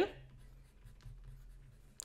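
Faint scratching and tapping of a stylus writing a word on a tablet screen, over a low steady hum.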